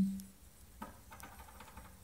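Bourbon poured into a glass Mason jar of citrus juice: a small clink, then a brief faint trickle of liquid.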